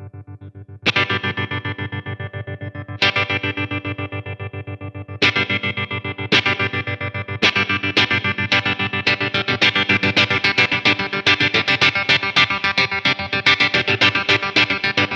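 Fender Telecaster electric guitar played through a One Control Tiger Lily Tremolo pedal. Chords are struck and left to ring, their volume pulsing evenly about five times a second. The strums come more often in the second half.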